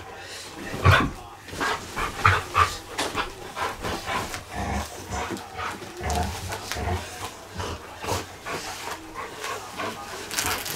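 Border collie play-wrestling over a cloth cushion: short, irregular dog noises mixed with the rustle and bumps of the cushion and bedding as it bites and tugs.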